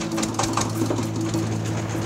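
Small boat engine running steadily with a rapid mechanical chatter.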